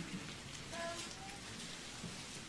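Faint, even rustle of Bible pages being turned to a just-announced verse.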